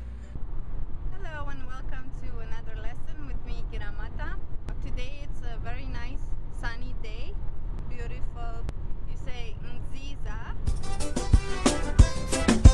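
A woman talking inside a moving car, over the steady low rumble of the car's cabin noise. Music comes in near the end.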